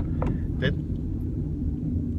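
Steady low rumble of a car on the move, heard from inside the cabin: engine and road noise.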